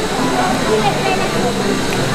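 Restaurant background chatter: several diners' voices overlapping at a steady murmur, with no one voice in front.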